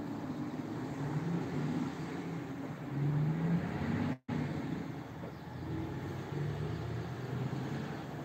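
Road traffic: a motor vehicle's engine hum passing by, swelling about three seconds in. The sound cuts out for a split second just after four seconds, then the traffic noise carries on.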